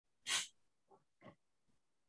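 A short breathy puff close to the microphone, a person's exhale or sniff, followed by two much fainter soft breaths.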